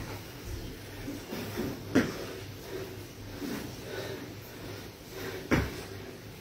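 Two thuds of a sneakered foot landing hard on an exercise mat over a hard floor during lunges, about three and a half seconds apart.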